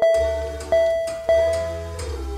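A bell-like chime sound effect struck three times, about two-thirds of a second apart, each ring dying away, as team names pop up on a screen. Under it runs background music with a steady low bass note.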